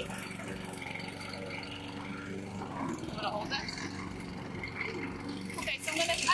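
Small petrol engine, most likely a string trimmer, running steadily at an even pitch in the background.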